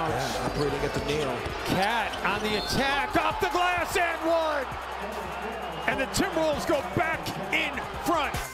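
Live basketball game audio: a ball bouncing on the hardwood court and players' sneakers squeaking in many short squeals, over a background of arena noise.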